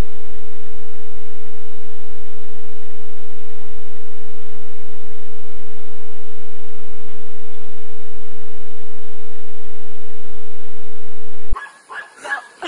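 A loud, steady electronic tone at one mid pitch, held without a break, that cuts off suddenly near the end.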